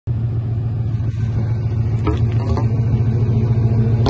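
Ford Crown Victoria's V8 idling, its exhaust a steady low rumble at the tailpipe. After hours of idling in the cold, condensation water has collected in the exhaust.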